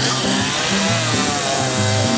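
Chainsaw running under load as it cuts into a wooden log, with a song playing over it.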